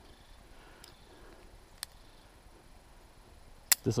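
Faint handling of rope-rescue hardware as a Ropeman rope clamp is clipped into a carabiner: a soft tick, then one sharp metal click a little under two seconds in, and another click near the end.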